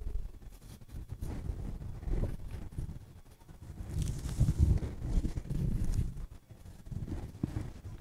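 A flat brush scrubbing watercolor onto a pre-gessoed canvas, with soft, irregular low rumbling and bumps and a faint scratchy hiss about four seconds in.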